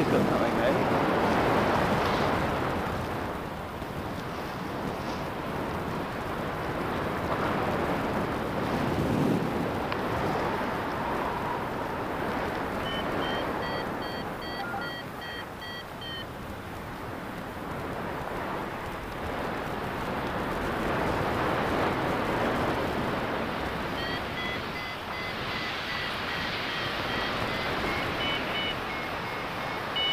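Airflow rushing over the microphone of a paraglider in flight, swelling and fading. Twice, for a few seconds at a time, a variometer sounds a fast run of short high beeps, signalling that the glider is in rising air.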